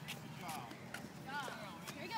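High-pitched children's voices calling out in the distance, with a few sharp knocks in between.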